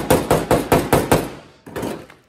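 A small hammer rapidly tapping in the edges of a new steel outer skin on a Mercedes Sprinter door, about five light strikes a second. The run stops a little over a second in, and one more brief knock follows near the end.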